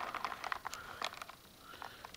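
Faint handling noise of a leather knife sheath being moved against a leg: scattered light clicks and rustles that thin out after about a second.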